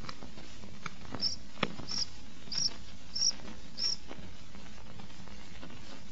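Cricket chirping: five short, high chirps about two-thirds of a second apart, over a steady hiss.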